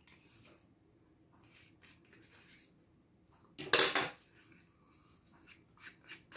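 Small plastic cup of ranch dressing being opened by hand: faint clicks and rustles of the lid, with one louder rustling noise lasting about half a second a little past halfway.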